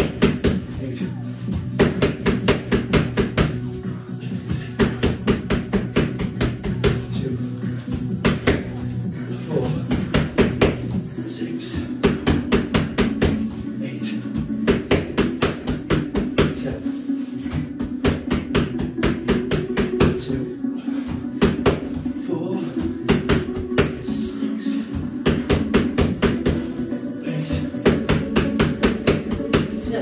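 Boxing gloves smacking focus mitts in quick flurries of several punches a second, over background music.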